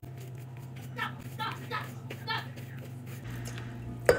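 Hands squeezing and mixing gordita dough in a plastic mixing bowl, faint under a steady low hum. A faint voice speaks briefly about a second in.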